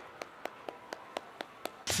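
Faint, evenly spaced clicks, about four a second. A man's voice and music come in sharply at the very end.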